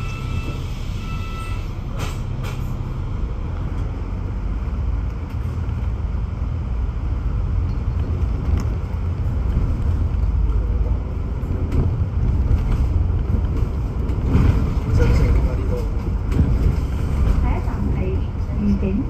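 Inside a double-decker bus: a short series of door beeps for the first second or so, then the engine rumble builds as the bus pulls away from the stop and gathers speed, with road noise.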